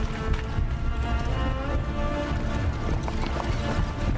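Background music with sustained notes over the hoofbeats of a column of horses walking.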